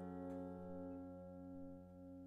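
A strummed guitar chord ringing out and slowly fading, one of its notes wobbling in level about every half second.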